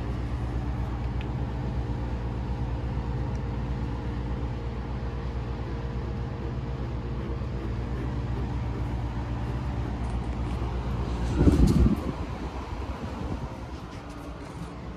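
GE PTAC wall air-conditioning unit running with a steady low mechanical hum. About eleven seconds in there is a loud, brief rumbling thump, and the hum is quieter after it.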